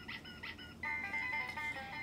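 Babble Ball electronic dog toy playing a tune: a few quick chirps, then a longer run of notes from about a second in.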